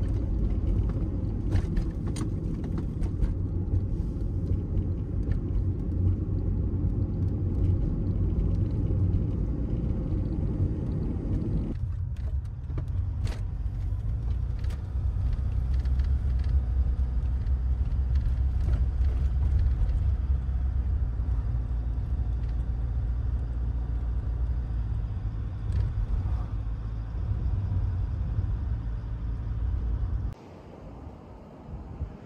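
Car driving on a paved road: a steady low rumble of engine and tyre noise heard from inside the cabin. About twelve seconds in the sound changes suddenly, the higher road roar dropping away and leaving mostly the low rumble.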